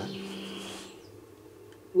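Jibo social robot's speaker playing a held electronic chord that fades away within the first second, leaving quiet room tone.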